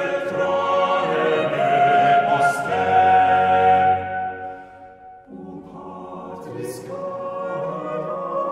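Choir singing slow, sustained chords; a phrase ends on a long held note about four seconds in, and a softer phrase enters about a second later.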